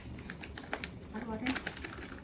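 Quick, irregular light clicks and taps of kitchen utensils against a mixing bowl as the bun mix goes into the whipped egg whites, with a short voiced hum about a second and a half in.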